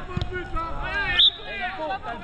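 A football kicked with a dull thump just after the start, amid shouting voices of players and spectators on the pitch. A brief shrill high-pitched sound about a second in is the loudest moment.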